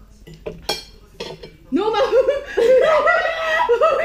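A few light clicks of forks against plates, then, from just under two seconds in, loud high-pitched laughter in short bouts.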